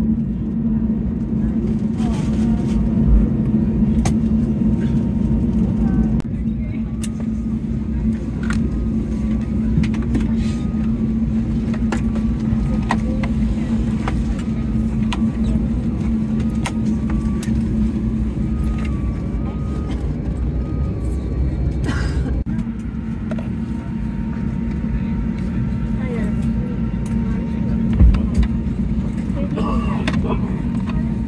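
Steady low drone of an Airbus A320 cabin parked at the gate, the air-conditioning running, with scattered sharp clicks and knocks.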